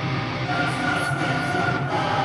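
Live heavy metal band music: a droning held chord, with higher sustained notes coming in about half a second into it.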